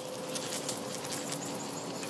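Outdoor garden ambience: a steady, even hiss with faint scattered ticks and a faint steady hum underneath.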